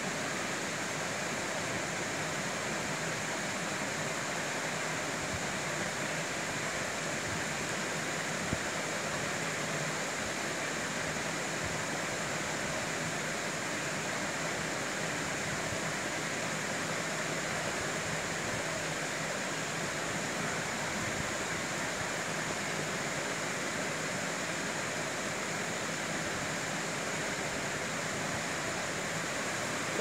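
Steady, even background hiss like a fan or air conditioner, with one faint tick about eight seconds in.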